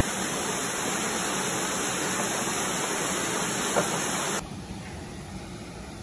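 Steady rush of falling water from a canyon waterfall; about four seconds in it cuts suddenly to a quieter water rush.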